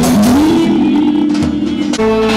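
Live Turkish wedding dance music led by a clarinet over a percussion beat; the melody slides upward and then holds a long, steady note.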